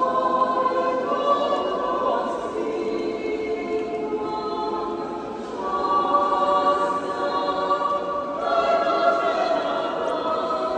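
Orthodox church choir singing a prayer unaccompanied, several voices holding long chords that change every second or two.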